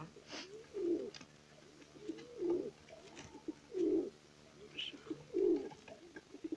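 Domestic pigeons cooing: low, rolling coos that repeat about every second and a half.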